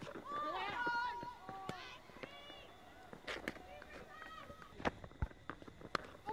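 Faint shouts and calls from players on a cricket field: high voices rising and falling through the first two and a half seconds, then fainter calls. A few sharp knocks follow in the second half.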